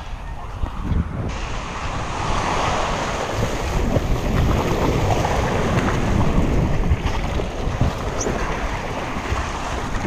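Surf washing around the kayak in the shore break, with wind buffeting the camera microphone in a steady rumble.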